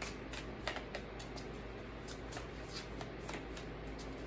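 A deck of tarot cards shuffled by hand: quick, irregular papery clicks and slaps as the cards slide and knock against each other, several a second.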